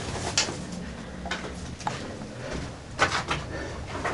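Scattered soft knocks and scuffs from someone moving around and handling the camera in a small enclosed brick room, over a low steady rumble. A slightly louder cluster of knocks comes about three seconds in.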